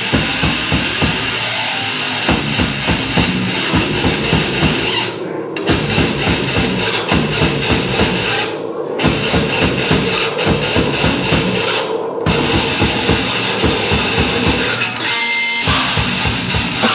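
Live technical death metal from a nine-string electric guitar and a drum kit: dense, fast drumming under distorted guitar, with three short stops about 5, 9 and 12 seconds in.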